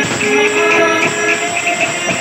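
Odia kirtan music: a male lead singer holds a note through a microphone over a steady jingling of hand cymbals, about four strokes a second, with khol drums.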